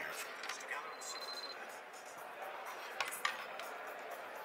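Quiet hall room tone, with a short faint high beep about a second in and two small sharp clicks about three seconds in.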